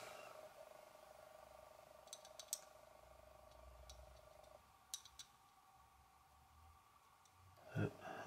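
Near silence: room tone with a faint steady hum that fades out about halfway, and a few faint small clicks, two about two seconds in and two about five seconds in.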